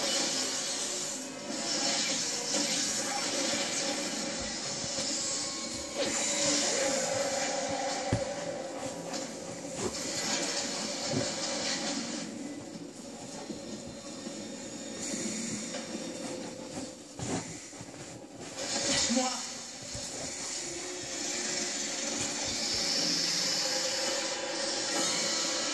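A television playing in the room: a programme's music with some voices.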